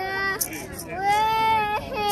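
A young girl singing long held notes, the second one sliding up into place about a second in, with a few faint shakes of a small wooden hand rattle.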